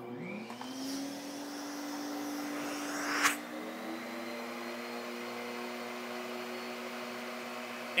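Vacmaster wet/dry shop vac switched on: its motor spins up with a rising whine within the first second and then runs steadily with a rush of air. About three seconds in there is a short, louder rush, and the motor's note shifts as the hose end is closed off against the water-lift gauge.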